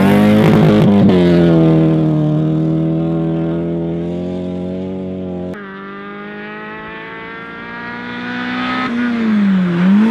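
A rally car passes at full throttle on a gravel stage, gravel spraying, then runs away on steady revs as it fades. Over halfway through it cuts to a Peugeot 206 rally car approaching, its engine growing louder, the pitch dipping briefly near the end and climbing again.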